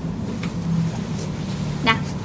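A steady low hum in the room during a pause in the talk, with a faint tick about half a second in.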